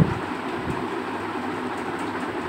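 Steady hissing background noise, with one light click at the start.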